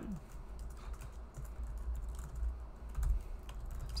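Typing on a computer keyboard: an irregular run of light key clicks, over a steady low hum.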